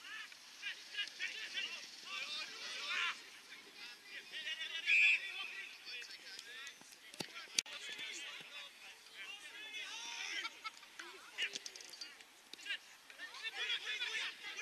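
Players shouting and calling to one another across an Australian rules football field, the voices thin and distant. A short, loud whistle blast about five seconds in, typical of an umpire stopping play, and two sharp knocks a couple of seconds later.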